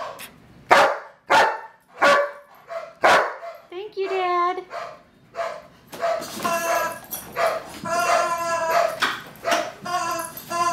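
A German Shepherd-type dog vocalising on being told to say thank you: four short, sharp barks in the first three seconds, a wavering whine about four seconds in, then a long run of drawn-out, talking-like yowls.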